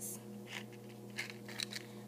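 A few faint clicks and rustles of a cardboard matchbox being handled, spread through the moment, over a steady low hum.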